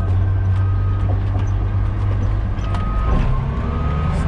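Caterpillar D10T dozer's V12 diesel engine running steadily, heard from inside the cab as a deep, constant drone, with a faint higher whine coming and going over it.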